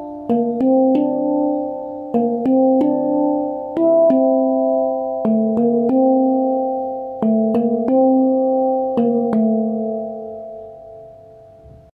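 Handpan (hang drum) in D minor Kurd scale, played by hand in a melodic pattern of struck notes that ring and overlap, in groups of two or three strokes. After the last strokes, about nine seconds in, the notes ring out and fade away.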